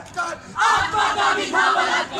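A group of voices shouting loudly, starting about half a second in and continuing to the end.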